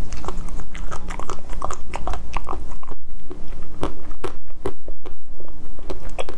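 Close-miked crunching and chewing of a mouthful of a hard black dessert bar, in a quick, irregular run of sharp crunches.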